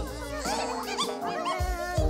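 Cartoon critter voices: high, wavering squeaks and chirps from cute animated characters, over light background music, with a few soft low thumps as the little figures land.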